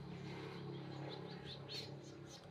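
Outdoor ambience with a steady low hum. Several short high bird chirps come in about a second in.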